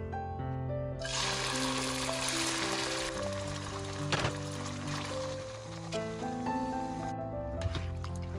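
Chicken livers sizzling in hot melted fat in a pan, the sizzle starting suddenly about a second in and cutting off about seven seconds in, over background music.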